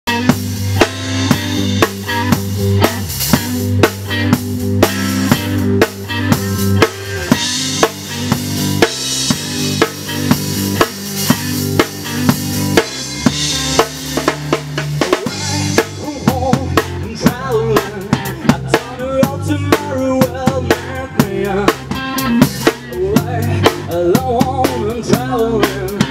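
Blues-rock band playing an instrumental intro: drum kit keeping a steady beat of kick, snare and cymbals over a bass guitar line. From a little past halfway a guitar line with wavering, bending notes joins in, and a voice starts singing right at the end.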